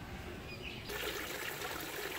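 Water trickling and splashing from a small tiled fountain spout into a pond, a steady rush that comes in about a second in.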